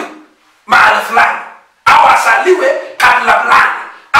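A man preaching in a loud, shouting voice: three short phrases with brief pauses between them.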